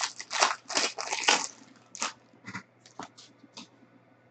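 Foil wrapper of a Panini Luxe basketball card pack crinkling as it is torn open, dense for about the first second and a half, then a few light rustles and ticks as the cards are pulled out.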